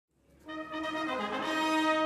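Military wind band's brass section opening a march. It comes in about half a second in and plays a few held notes that step down and back up in pitch, growing louder.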